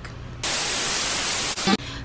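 A burst of white-noise static, about a second long, starting just under half a second in and cutting off suddenly: a TV-static sound effect edited in as a transition.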